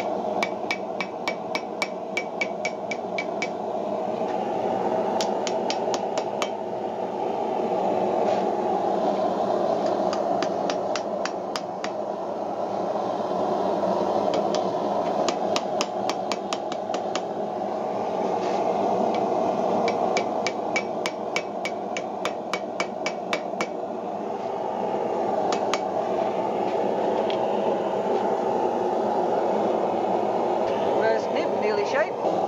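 Hand hammer forging red-hot wrought-iron tong stock on the anvil: several runs of quick ringing blows, about four a second, with pauses between them while the work is turned. A steady rushing noise runs underneath.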